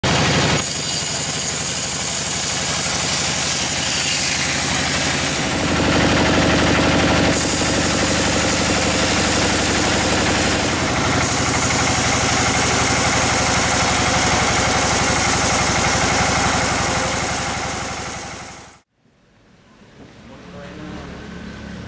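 Band sawmill running and sawing through a large red bayur (Pterospermum) log: a loud, steady machine noise with the hiss of the blade in the wood. The sound changes abruptly a few times and fades away near the end.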